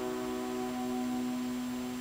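A held keyboard chord sustaining steadily and slowly fading away, with no voice over it.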